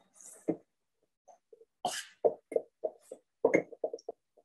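Lye crystals poured from a plastic cup into water in a glass jar, with a short hiss at the start, then a spoon stirring the mixture, knocking and scraping against the glass in quick, irregular taps.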